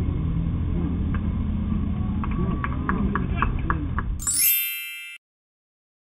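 Open-air ballfield sound: a steady low rumble with distant players' voices and calls. About four seconds in, a bright electronic chime with a rising shimmer plays for the inning-change graphic, then cuts off sharply into silence.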